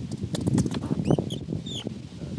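European ground squirrels scrabbling and scratching in the sand right against the camera, a dense run of soft close scrapes and taps.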